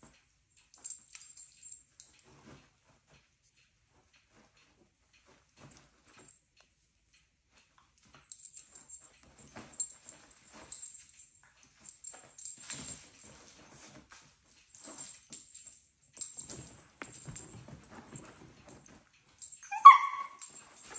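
Two dogs play-wrestling: faint scuffling and snuffling, busier in the second half, with one short, high-pitched yip just before the end.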